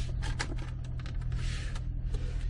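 Rustling and a few light clicks of a hand moving over the car's plastic centre console, over a steady low hum.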